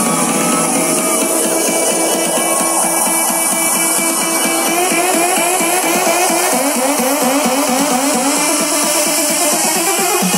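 Loud electronic house music over a festival sound system, heard from within the crowd. It comes through thin, with almost no bass. About halfway through, a repeating rising synth figure starts and builds.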